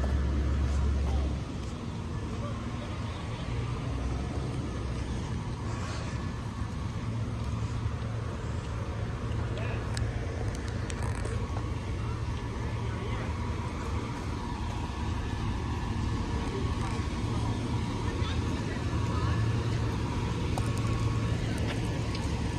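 Steady low hum of fire apparatus engines idling along the road, with a stronger low rumble for about the first second.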